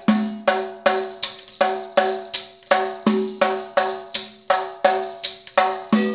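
Middle Eastern style tambourine played in a steady repeating rhythm of about three strokes a second, the jingles ringing on every stroke. A deeper open bass stroke comes round about every three seconds, opening each cycle of the pattern.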